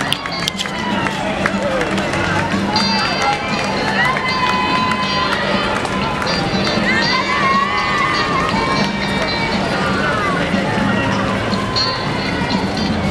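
Many runners' footsteps on a paved road, with spectators chattering around them and music in the background.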